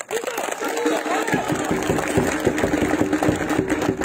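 An engine running with a steady drone and a fast, even ticking that settles in about a second in.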